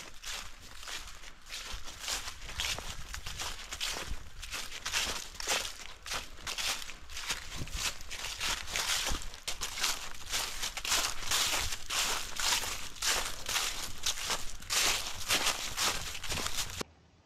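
A hiker's footsteps through trailside grass and fallen leaves, at a steady walking pace of about two steps a second, growing louder in the second half.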